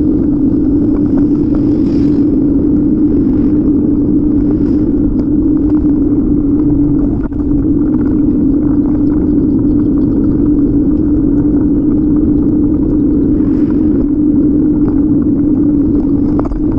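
Steady, loud rumble of wind buffeting the microphone and tyre noise from a bicycle rolling over pavement, with a constant low hum underneath that dips briefly about halfway through.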